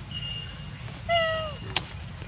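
Infant macaque giving a single coo about a second in, half a second long, its pitch sagging at the end, followed by a sharp click.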